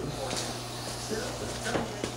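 Faint, indistinct background speech over a steady low hum, with two or three short clicks.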